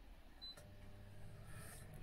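JVC JK-MB047 air fryer's control panel giving one short high beep about half a second in, then its fan motor starting with a faint steady hum as the appliance switches on into preheating.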